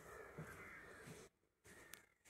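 A faint bird call, wavering, lasting about a second, then a short drop to near silence.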